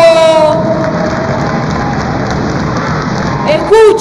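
Audience applauding, an even clatter of many hands in a large hall, with a voice over it at the very start. Speech picks up again just before the end.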